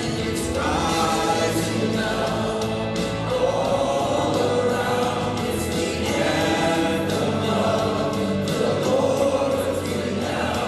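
Group singing of a contemporary worship song, with a worship leader's voice amplified through a handheld microphone and many voices singing together in sustained notes.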